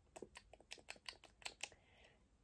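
A run of faint, quick clicks, about ten over a second and a half, that stop near the end.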